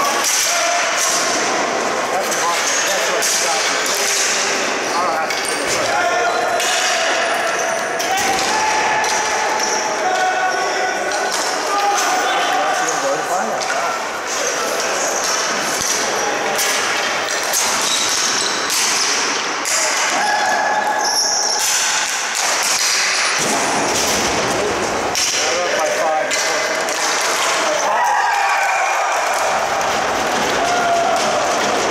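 Ball hockey play on a concrete arena floor: repeated sharp clacks and knocks of sticks hitting the plastic ball, the floor and the boards, with players' indistinct shouts and calls throughout.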